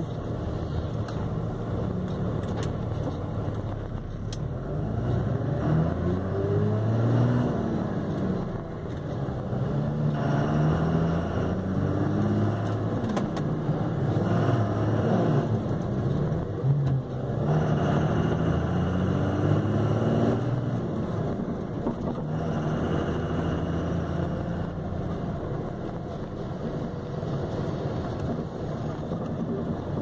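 Car engine heard from inside the cabin, its pitch rising and falling again and again as the car speeds up and eases off in slow stop-and-go traffic, over steady road noise.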